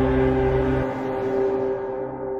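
Trailer sound design at the title card: a sustained ringing drone of several steady tones over a deep rumble. The rumble drops away about a second in, and the ringing slowly fades.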